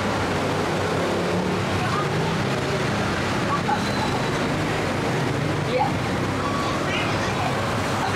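Steady street traffic noise with engines running, under faint background voices.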